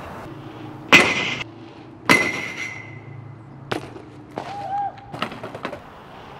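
BMX bike clanking on hard ground: two loud, sharp impacts about a second apart, each leaving a short metallic ring, then a weaker knock and a few light clicks near the end.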